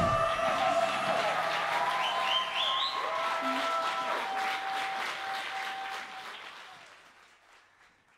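Audience applauding and cheering in a club once the band's song has ended, the last chord dying away at the start. The applause fades out over the final couple of seconds.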